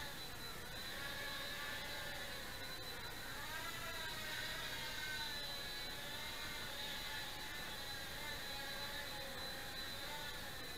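Blade Nano QX micro quadcopter's small motors and propellers whining in flight, the pitch wavering up and down as the motors constantly adjust speed to hold it steady. A steady thin high tone runs underneath.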